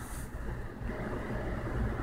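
Steady low background rumble with a faint even hiss, with no distinct events.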